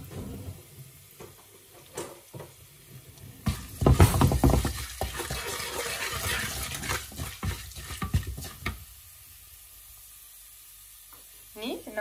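Dal and fennel seeds frying in oil in a non-stick wok, sizzling and stirred with a wooden spatula. The spatula scrapes and clicks against the pan for about five seconds from about three and a half seconds in, with quieter frying before and after.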